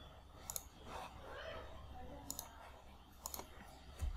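Faint computer mouse clicks, in three small clusters of quick clicks spread across a few seconds, over a quiet room background.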